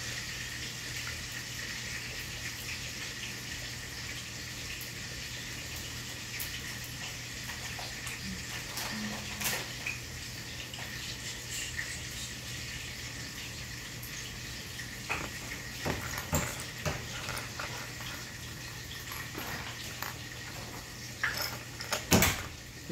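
Steady rushing hiss of running water with a low constant hum under it, from the kitchen. Light clicks of plastic Lego pieces being moved on the table come in the last few seconds.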